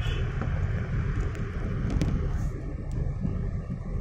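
Steady low rumble of road and wind noise from a moving vehicle, heard from on board, with a few faint clicks.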